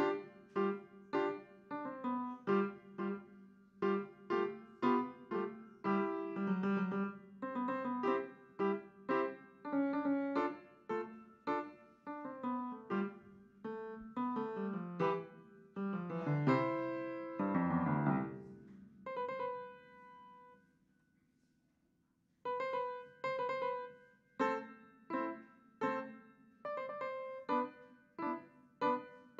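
Piano played by a young student: a march of steady, evenly struck notes. About two-thirds of the way through comes a quick downward run and a held chord that dies away, then a pause of a second or two before the steady notes start again.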